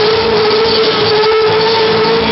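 A child's singing voice holds one long, slightly wavering note over a loud pop backing track.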